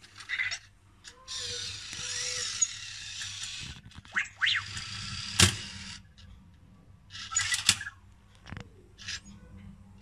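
Anki Vector robot's small motors whirring in spells as it turns and moves about next to its light cube, with a few short gliding electronic tones and one sharp click about five and a half seconds in.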